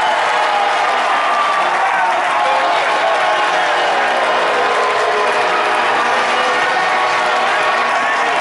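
Large stadium crowd cheering and clapping: a loud, steady wall of many voices with no pause.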